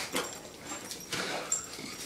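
Large mastiff-type dog whimpering and shuffling on a tile floor as it begs for a treat held out of reach, in a few short, soft sounds.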